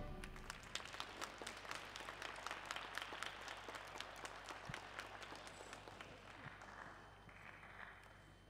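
Sparse audience applause in an ice arena, the individual claps distinct. It thins out and fades over several seconds.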